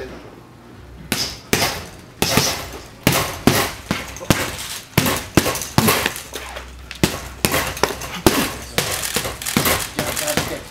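Boxing gloves striking a leather punching bag, a sharp smack about twice a second, starting about a second in.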